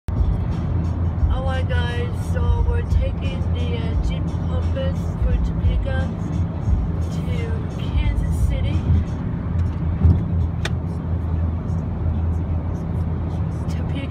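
Steady low road and engine rumble inside a Jeep Compass cabin at highway speed, with a voice and music playing over it. A single sharp click about ten seconds in.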